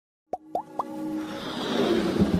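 Intro-animation sound effects: three quick rising pops about a quarter second apart, followed by a whoosh that swells steadily louder toward the end.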